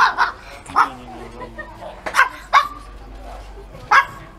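A small black dog barking several short, sharp times, with gaps between the barks.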